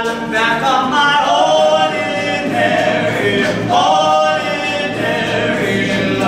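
All-male a cappella group singing in harmony, several voices holding chords while a lead line slides between notes, over low sustained bass tones.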